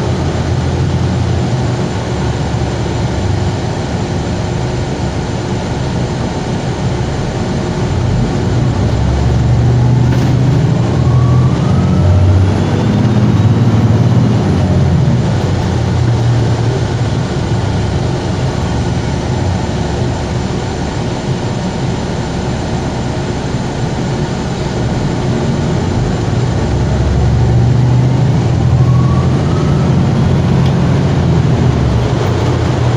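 Cabin noise inside a 2020 Gillig BRT hybrid-electric transit bus under way: steady drivetrain and road rumble, with a rising whine as the bus picks up speed, about ten seconds in and again near the end.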